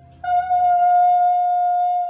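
A woman's singing voice holding one long, steady high note that begins about a quarter second in, after a brief pause for breath.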